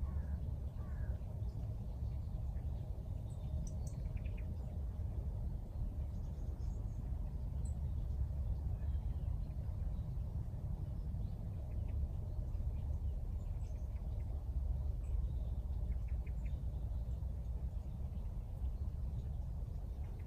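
Outdoor ambience: a steady low rumble of wind on the microphone, with a few faint, scattered bird chirps.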